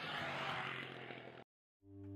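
Off-road motorcycle engine running on a pass over a gravel field, easing slightly, then cut off abruptly to silence about one and a half seconds in.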